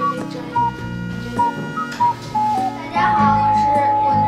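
Background music: a melody of short high notes over sustained low notes, settling into a long held note near the end, with a child's voice coming in under it.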